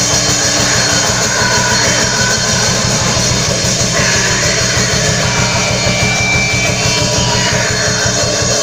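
Live loud rock band playing: electric guitar over fast, dense drumming, without a break.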